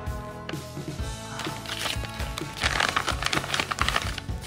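Thin plastic bag crinkling and rustling as a pistol is pulled out of its wrap, loudest in the second half. Background music plays throughout.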